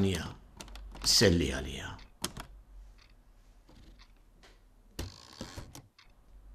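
Manual typewriter being typed on: separate key strikes spaced out, a sharp clack about two seconds in and a louder clatter of strikes near the end.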